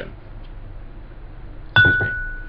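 Faint room hum, then near the end a single sharp clink that rings on as one clear high tone, fading over about a second.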